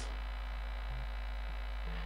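Steady low electrical mains hum from the church sound system.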